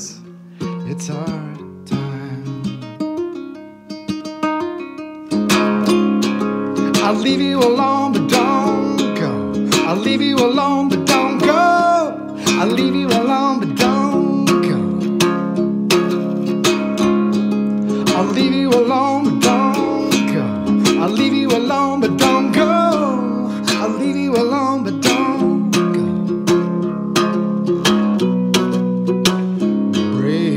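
Acoustic ukulele played solo: quiet picked notes for the first few seconds, then much louder, steady strumming for the rest.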